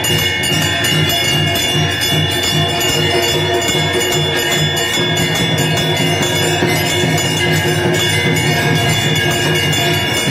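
Temple bells ringing continuously over a fast, steady drumbeat: the ritual music of the aarti, the lamp-waving before the deity.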